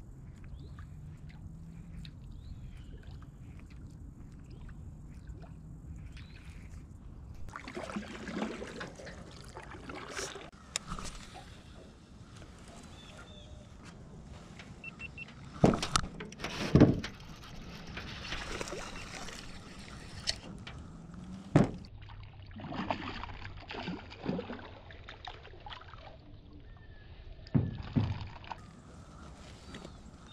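Water splashing and sloshing against a small metal jon boat while a hooked bass is brought in, with several sharp knocks on the hull in the second half.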